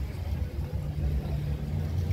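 Small boat's motor running as a steady low rumble, with a faint hum holding through the middle.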